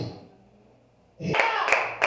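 A moment of near silence, then just over a second in, steady hand clapping starts at about three claps a second, with a voice over it.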